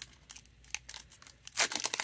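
A foil-lined trading-card pack (2021 Panini Donruss Optic football) being torn open and crinkled by hand: scattered faint crackles, then a louder burst of crinkling and tearing near the end.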